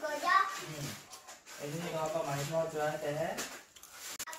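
Speech only: a child's voice in the first moment, then about two seconds of a lower-pitched voice talking. No other sound stands out.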